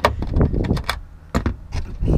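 About four separate clicks and knocks from a ratchet and socket being worked on the taillight's mounting nuts, snugging them only hand tight so the studs don't pull out of the plastic housing.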